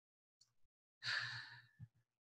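A woman's single short breath, a sigh-like exhale or intake about a second in, lasting about half a second, between long stretches of silence from the call's muted audio.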